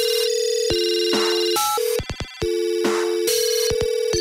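Electronic track built on a telephone tone: a steady two-note tone like a dial tone, chopped into stutters by short cuts. Two noisy hits fall in the middle, and a quick cluster of clicks comes about two seconds in.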